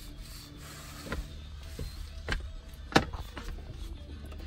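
Handling noise: a few light knocks and rubbing, with one sharp knock about three seconds in, over a low steady hum.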